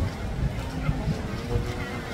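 Low, unsteady rumble of wind buffeting the microphone, with faint voices in the background.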